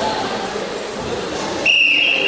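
Referee's whistle: one steady, shrill blast that starts near the end, over the general noise of a sports hall crowd.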